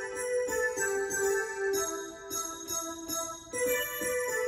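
A melody of single notes played on an electronic keyboard, about two or three notes a second, each one ringing on into the next. The phrase starts over near the end.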